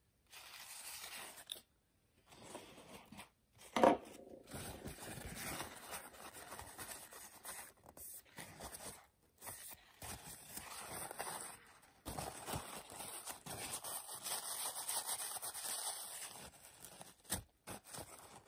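Paper towel rubbing and crinkling over the steel blade of a Spyderco Paramilitary 2 as it is wiped clean, in uneven strokes with short pauses. A single sharp click sounds about four seconds in.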